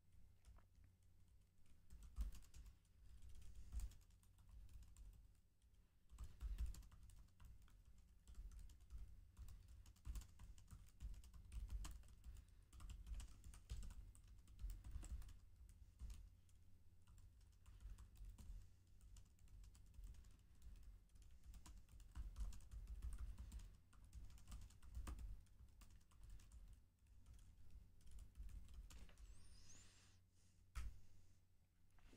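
Faint typing on a computer keyboard: irregular runs of keystroke clicks with short pauses between them.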